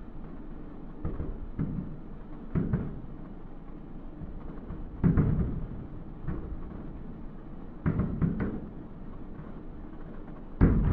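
Distant aerial fireworks shells bursting: a series of irregular echoing booms, the loudest about five seconds in and a quick cluster of three near eight seconds.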